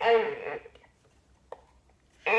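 A baby's brief wordless vocalization, a single falling voiced sound lasting under a second, with a small click about a second and a half in.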